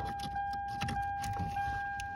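Small clicks and rattles of an OBD-II code reader's cable and plug being handled and pushed into the diagnostic port under the dashboard, over a steady high-pitched tone.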